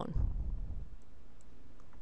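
A few faint clicks from a computer as the presentation slides are advanced, over a low rumble that is strongest in the first half-second.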